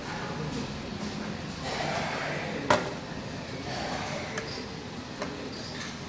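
Screwdriver and wire handling at the screw terminals of push-button switches: one sharp click a little before halfway, then a few fainter ticks, over a steady background hiss.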